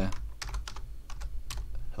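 Typing on a computer keyboard: a quick, irregular run of keystroke clicks over a low steady hum.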